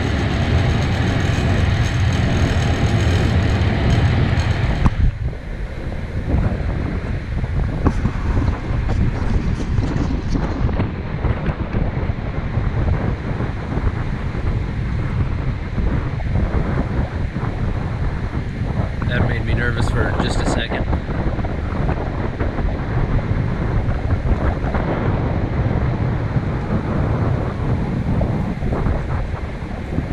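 Wind buffeting the microphone in gusts, a rough rumbling noise that drops suddenly about five seconds in.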